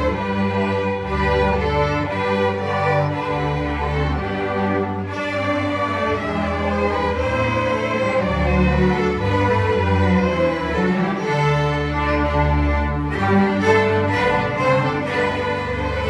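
A student string orchestra playing: violins, violas, cellos and double basses bowing a piece together, with sustained notes over a moving bass line.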